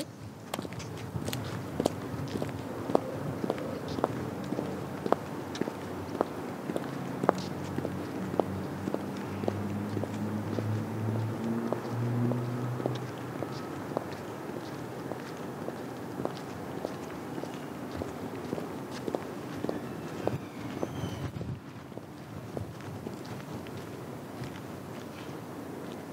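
Six-inch platform high heels (Pleaser Aspire-609) clicking on a concrete car park surface at an even walking pace, about one step every 0.7 s, over steady outdoor background noise. A low hum swells and fades in the middle.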